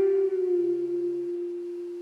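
A single electric guitar note, clean tone, on the third string at the eleventh fret, ringing out after it is let back down from a bend. It settles slightly in pitch at first, then holds steady and slowly fades.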